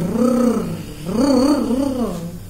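A woman's voice trilling a long rolled R, 'rrrr', in two sweeps that rise and fall in pitch, the second starting about a second in.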